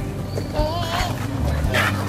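High-pitched children's voices around a street vendor's toy cart, one drawn-out wavering cry about halfway through, over a steady low rumble.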